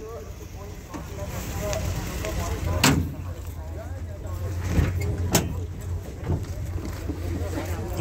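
Open-air car market background: a steady low rumble with faint distant voices. Two sharp clicks come about three seconds in and again about two and a half seconds later.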